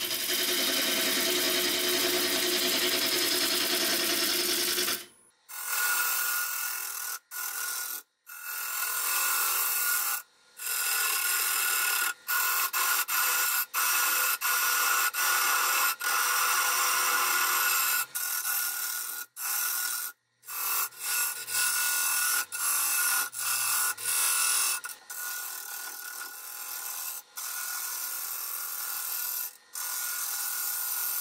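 Turning tool cutting a large oak blank spinning on a wood lathe: a steady scraping hiss of the tool shearing the wood, broken by several brief gaps.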